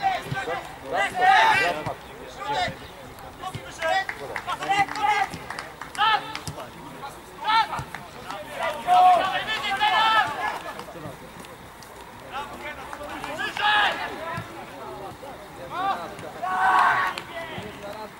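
Voices shouting short calls across a football pitch during play, a loud call every second or two with quieter talk between.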